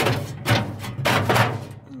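A stainless steel heat deflector plate knocking and clanking against the metal inside of a charcoal smoker as it is set into place: several sharp metallic knocks at uneven spacing, each with a short ring.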